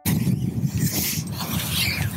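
Open-air seaside ambience on a shingle beach: a steady low rumble of wind and surf, with two brief swells of higher hiss, one about a second in and one near the end.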